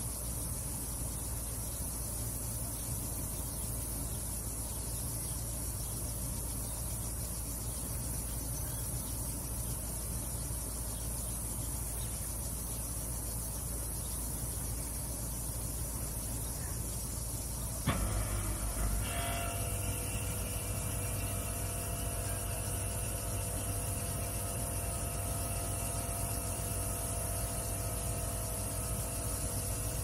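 A steady low rumble with a high hiss. About eighteen seconds in comes a sudden click, after which a steady hum with several pitches runs on.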